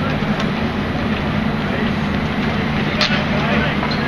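A steady low hum under faint voices, with a sharp clack about three seconds in, typical of a street hockey stick striking the ball or court.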